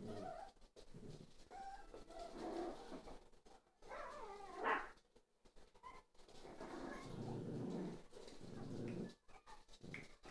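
Jack Russell Terrier puppies at play giving short, high cries, the loudest a rising yelp about four to five seconds in, with lower scuffling sounds later.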